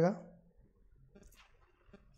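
A man's word ends just after the start, followed by faint, scattered short clicks.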